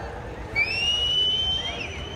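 A person whistling one long loud note that slides up at the start and is then held for about a second, over the low noise of a crowd.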